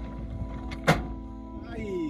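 Background music with one sharp knock about a second in, the Daihatsu Terios's underbody striking rock on a rough descent, followed near the end by a short falling tone.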